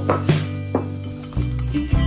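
Wire whisk beating egg and sugar in a ceramic bowl, the wires clicking against the bowl in about five quick, uneven strokes, over background music.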